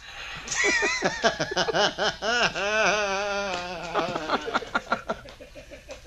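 Hearty human laughter starting about half a second in, in quick repeated bursts, then tapering off and fading to near quiet toward the end.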